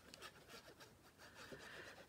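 Near silence, with faint rubbing and ticking as the tip of a liquid-glue bottle is drawn across cardstock.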